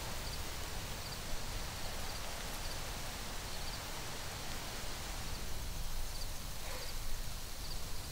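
Outdoor field ambience: a steady low wind rumble and hiss, with faint high chirps every second or so.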